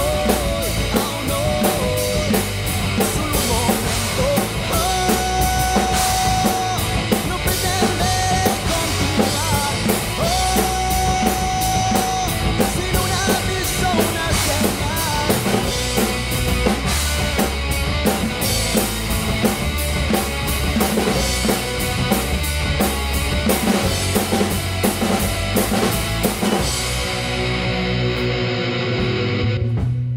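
PDP rock drum kit played hard along with a rock song's guitar backing, with steady kick, snare and cymbal hits. About 27 seconds in, the drums and cymbals stop and only the guitar keeps ringing.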